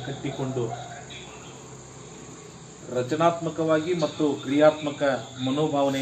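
A man speaking in Kannada, breaking off for about two seconds in the middle before carrying on. A faint, steady, high chirring of crickets runs underneath.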